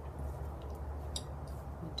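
A steady low hum with two light clicks, about a second in and near the end, as small carved rosewood burl pendants are picked up and handled.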